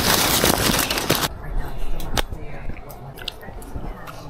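A person biting into and chewing a bacon, egg and cheese sandwich on a roll. There is a loud rustle for the first second or so, then quieter chewing with a few small clicks.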